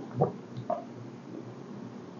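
Quiet mouth sounds of someone sipping and swallowing bourbon: a short soft gulp about a quarter second in and a smaller one just before the middle.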